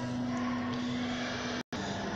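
Steady background hum and room noise with no distinct event, broken near the end by a split-second total dropout where the recording is cut.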